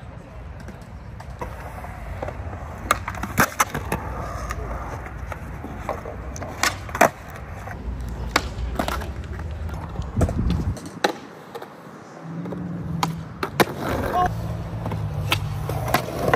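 Skateboard rolling on concrete: a steady low rumble from the wheels, with sharp clacks of the board's tail and wheels hitting the ground at several points. The rumble drops out for a second or so past the middle, then picks up again.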